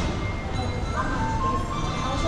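Music playing, with voices in the background; held notes come in about a second in.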